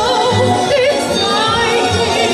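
Classically trained female soprano singing with a wide vibrato over instrumental accompaniment.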